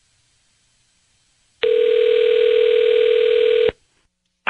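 Telephone ringback tone on an outgoing call: one steady ring about two seconds long, starting a little over a second and a half in and cutting off sharply, while the line waits to be answered.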